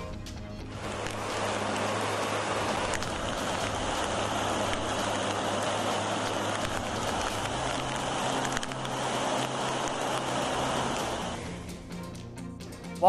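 Steady rushing noise of heavy rain and running water, starting about a second in and fading near the end, over a background music bed with steady low notes.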